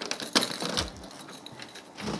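A few sharp clicks and clinks as a front door is unlatched and swung open, with a couple of soft footsteps.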